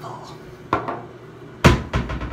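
Two sharp knocks of hard objects being handled close to the microphone, about a second apart. The second knock is much louder, and a smaller hit follows it near the end.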